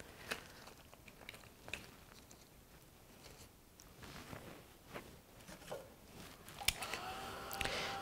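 Faint scattered clicks, taps and rustles of gloved hands handling small craft items and a paperclay piece on a worktable, with a faint steadier sound starting near the end.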